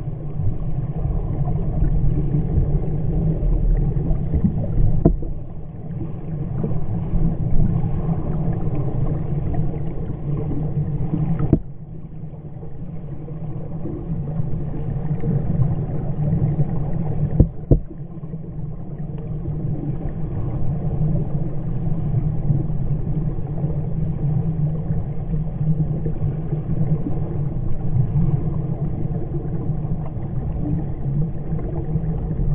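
Muffled water noise heard underwater in a swimming pool as a swimmer does front crawl overhead: a steady low rushing rumble. Two sharp knocks come a little over a third of the way in and again just past halfway, each followed by a brief drop in level.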